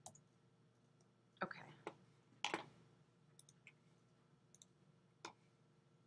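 A handful of scattered, sharp computer clicks from a mouse and keyboard, over near silence.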